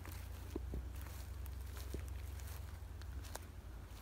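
Footsteps walking on grassy forest ground, a few faint scattered steps over a steady low rumble.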